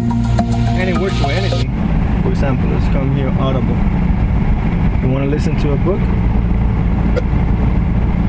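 Music played from a phone through the car's factory stereo by an FM transmitter cuts off suddenly about two seconds in. Then a recorded spoken voice plays through the car speakers in short stretches, over a steady low rumble in the cabin.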